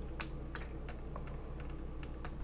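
A string winder cranking a tuning peg on an Epiphone guitar headstock as a new string is wound on: a few light, irregular clicks and ticks.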